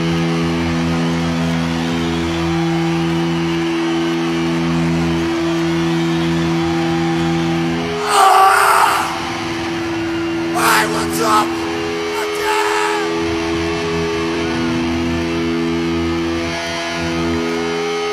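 Electric guitars and bass ringing through stage amplifiers, holding steady droning notes between songs. Shouts break in over it, loudest about eight seconds in and again around eleven seconds.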